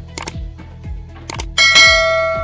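End-screen music with a steady kick-drum beat and short sharp percussion hits; about one and a half seconds in, a bright bell-like chime rings out and slowly fades.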